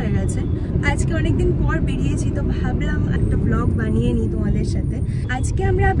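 Steady low road and engine rumble inside a moving car's cabin, under a woman talking.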